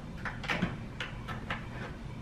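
A run of light clicks and knocks of hands working a cable connector into a plastic notebook cooler.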